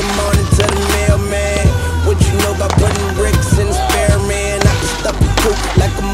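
Hip-hop music with a steady beat, over the sound of a snowboard sliding along a wooden picnic-table top.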